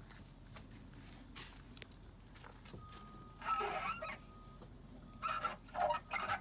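A toddler playing on plastic playground equipment: a few light knocks and a short burst of his babble about halfway through, against quiet outdoor background.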